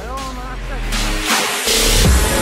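Electronic background music with a vocal line that bends in pitch near the start, building toward a brighter swell near the end.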